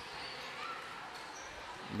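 Faint gymnasium ambience during a basketball game: low crowd chatter, with a basketball being dribbled on the hardwood court.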